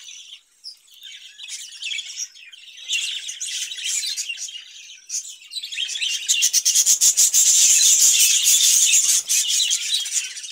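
A flock of caged budgerigars chattering and chirping continuously. The chatter swells into a louder, denser burst from about six seconds in.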